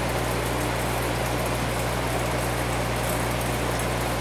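Aquarium air pump running with a steady low hum, with an even hiss of air bubbling through the tank's air-driven filters and protein skimmer.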